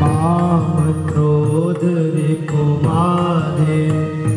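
Hindu devotional aarti hymn sung in long, drawn-out phrases whose pitch rises and falls, over a steady sustained drone.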